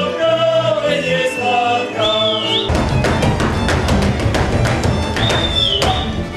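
Slovak folk ensemble: men singing, then about three seconds in a fiddle-and-cimbalom band strikes up a fast dance tune with sharp, rhythmic stamping of the dancers' boots. Two high sliding whoops ring out over it.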